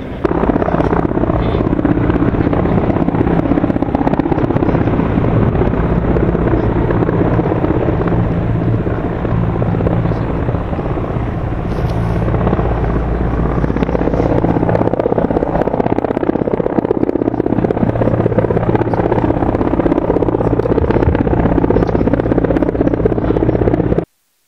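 Military helicopter flying low, its rotor and engines running steadily and loudly throughout, with a slight lull about halfway through.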